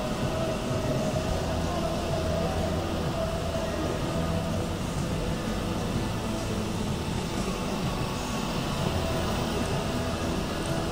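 Electric motor and propeller of an indoor F3P aerobatic model airplane running continuously: a steady whine made of several tones that waver a little in pitch as the throttle changes.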